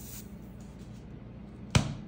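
Cardboard can of refrigerated Grands biscuit dough bursting open at its seam as the paper wrapper is peeled: a single sharp "confetti pop" near the end, after a quiet stretch.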